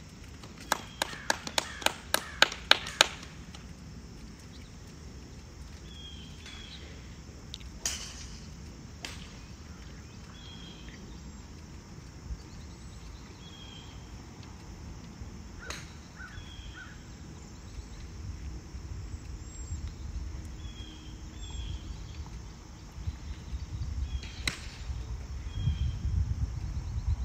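Golf-course ambience: a crow cawing in a quick run in the first few seconds, then scattered short high bird chirps. Near the end comes a single sharp crack of a driver striking a golf ball off the tee, over a low rumble of wind that grows toward the end.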